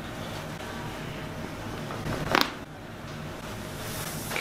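A single short, sharp crack about two seconds in as a chiropractic thrust is delivered to the upper thoracic spine at T3, over a steady low hum.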